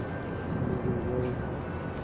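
Steady low rumble of outdoor urban traffic, with faint voices in the background.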